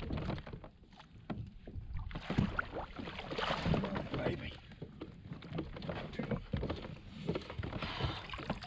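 A hooked bass splashing at the water's surface as it is netted beside a fishing kayak, with irregular splashes and knocks against the boat.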